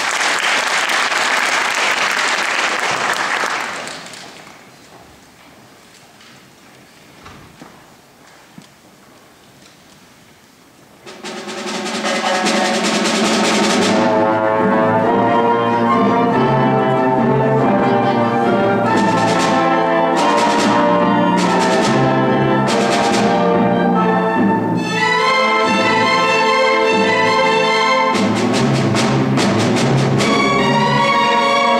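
Audience applause for about four seconds, then a hush, then a youth symphony orchestra begins playing about eleven seconds in: full orchestra with brass and strings, and several sharp percussion strikes in the middle.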